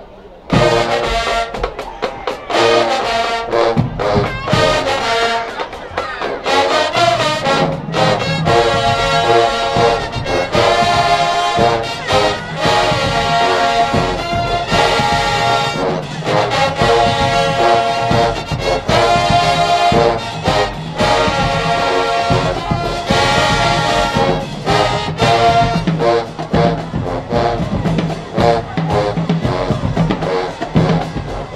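HBCU-style marching band playing: the brass and drumline come in together with a sudden loud hit about half a second in, then keep going with loud, punchy brass chords from sousaphones, trumpets and trombones over the drums.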